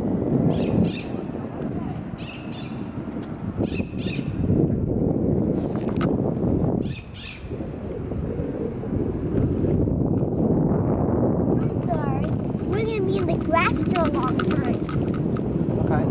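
Wind rumbling on a moving camera's microphone, a steady low rumble. Brief high chirps come three times in the first half, and voices appear near the end.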